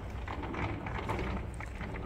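Low steady rumble and faint background noise of a shop while the handheld camera is carried along an aisle, with no distinct event.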